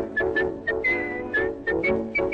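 Cartoon music score: a high whistled tune of short notes, with one longer held note about a second in, over a bouncy band accompaniment.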